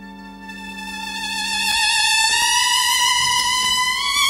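Solo violin holding one long high note that swells louder and slides gently upward, over a sustained keyboard chord that fades out partway through.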